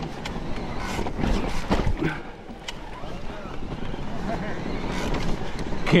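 Mountain bike rolling down a bare rock slab, with steady tyre and rattling noise and several sharp knocks, a few clustered between about one and two seconds in, as the wheels drop over rock steps. Wind buffets the microphone throughout.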